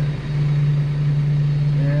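Tractor engine running with a steady low drone, heard from inside the cab, while the front loader tips a round bale into a ring feeder.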